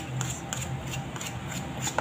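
Metal spoon scraping and clinking against a bowl while stirring cookie batter of egg, butter and flour, in quick repeated strokes, about three or four a second.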